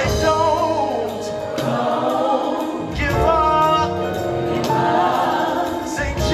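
Live gospel vocal group singing in harmony over a band with drums and bass, a new sung phrase coming in about halfway.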